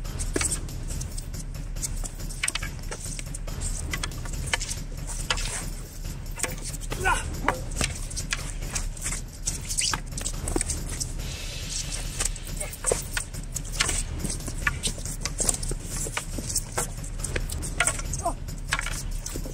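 Long wooden sparring poles clacking against each other and against protective gear in irregular sharp knocks throughout, over a steady low rumble.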